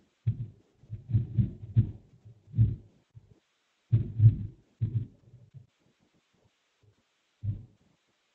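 Dull, low knocks and taps in irregular clusters, stopping for a second or so near the end before one more knock: a stylus and hand working on a drawing tablet, picked up by the desk microphone.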